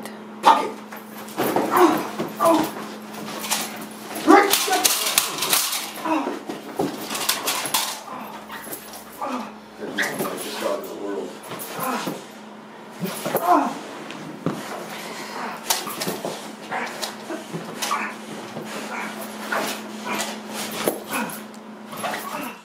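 Belgian Malinois biting into a padded protection bite suit and thrashing its head, making repeated irregular scuffs and knocks. The dog's vocal sounds and a man's voice come in at times.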